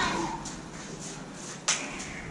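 A single sharp crack of two combat lightsaber blades striking each other, about three-quarters of the way through, echoing off bare concrete walls.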